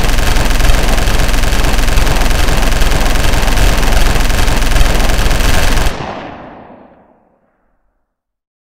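Sustained automatic machine-gun fire, a loud unbroken stream of rapid shots, that stops about six seconds in and fades away over about a second.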